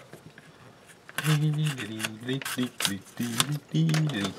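Cardboard packaging card being torn open by hand: repeated short rasping tears starting about a second in.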